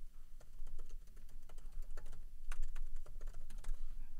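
Typing on a computer keyboard: a quick, irregular run of key clicks as a web address is entered.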